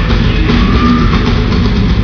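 A rock band playing loudly live: distorted electric guitars, bass and drum kit, heard from among the audience in a large hall.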